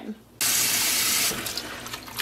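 Water from a tap running into a basin in a stainless steel sink for a rinse, starting suddenly about half a second in and running steadily, a little quieter after about a second.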